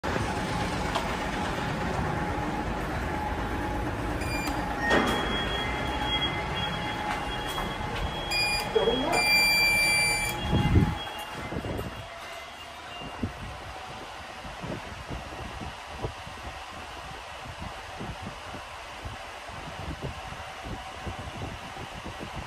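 Several short electronic beeps and one held beep of about a second, then a heavy thud a little before eleven seconds in as the lift doors shut. After that comes the quieter low running noise and faint clicks of a Hitachi passenger lift car travelling upward.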